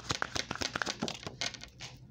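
A deck of reading cards being shuffled by hand: a fast, dense run of card flicks and snaps that stops just before the end.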